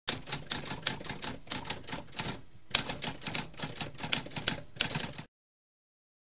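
Typewriter being typed on, rapid keystrokes clacking with a brief pause a little before halfway, stopping abruptly about five seconds in.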